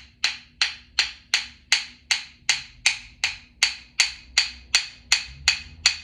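A pair of rhythm sticks struck together in a steady, fast beat, about three strikes a second, each a sharp click with a brief ring.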